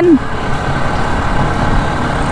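Motorcycle riding at road speed heard through a microphone on the rider's helmet cheek pad: a steady rush of wind and road noise with the engine running under it.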